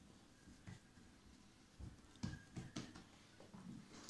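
Near silence, with a few faint soft taps and knocks about two to three seconds in, from hands handling rolled pastry dough on the table.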